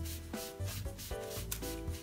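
A damp sponge rubbed back and forth over paper laid on wood, in repeated scrubbing strokes: wetting the dried photo transfer paper so the image shows through.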